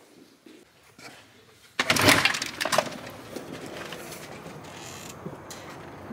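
A brief, loud rattling clatter about two seconds in, followed by steady background noise.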